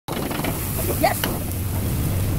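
Steady low roar of a high cooking flame under a wok, with food sizzling in the hot pan.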